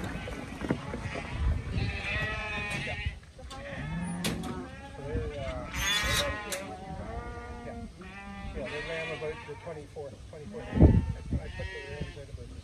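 Sheep bleating repeatedly in handling pens, a series of wavering calls one after another, with a loud thump near the end.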